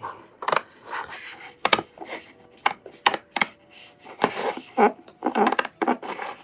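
Scissors slowly snipping through a sheet of white removable vinyl: a run of crisp, separate snips, roughly two a second and unevenly spaced.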